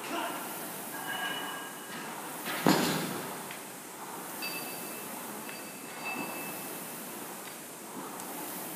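A rowing machine's flywheel whooshing in repeated strokes, with thin squeaks. One loud thud about three seconds in.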